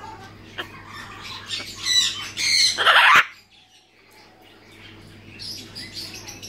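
Blue-and-yellow macaw giving two loud, harsh squawks: a short one about two seconds in and a longer one right after.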